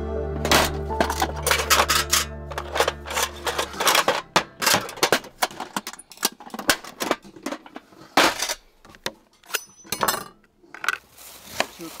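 Background music that stops about four seconds in, followed by a run of sharp metallic clicks and clinks as a metal box is unlatched and opened and its contents rattle. Softer taps follow near the end.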